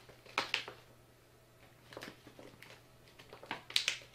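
Crinkling and crackling of an MRE's plastic outer bag being gripped and pulled at to tear it open, with a cluster of sharp crackles near the end.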